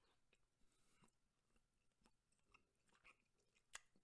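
Very faint chewing of a chocolate praline, with scattered soft mouth clicks and one sharper click near the end.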